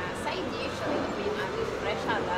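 Indistinct voices: a woman talking at a table, over background room noise.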